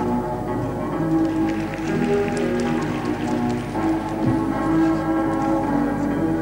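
Music for a figure skater's free-skate programme, playing steadily. For a couple of seconds in the middle, a quick patter of sharp clicks sounds over the music.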